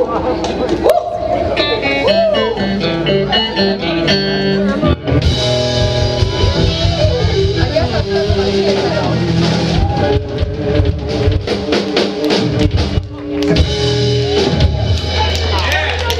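Live rock band of two electric guitars, electric bass and drum kit playing the end of a song. The guitars play lighter lines at first; about five seconds in, the full band comes in with drums and cymbals. Near the end, a low bass note is held.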